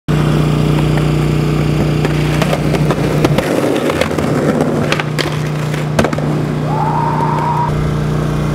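Skateboard wheels rolling on concrete, with sharp clacks of the board and trucks hitting the ground around the middle as the skater pops and lands a trick. A steady low hum runs underneath, and a brief high tone sounds near the end.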